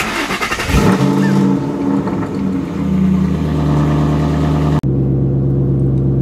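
2006 Ford Mustang GT's 4.6-litre three-valve V8, running without catalytic converters, starting up: it catches at once, flares up in revs within the first second, then settles over the next couple of seconds into a steady idle. Very loud, heard from the driver's seat. It is the first start on a freshly flashed ECU tune, and it idles well.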